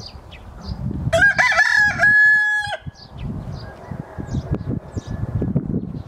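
A rooster crowing once, starting about a second in and lasting under two seconds: a rising opening that settles into a long held note, then cuts off.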